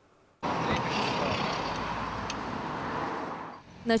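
Steady road traffic noise, starting about half a second in after a brief silence and fading out near the end.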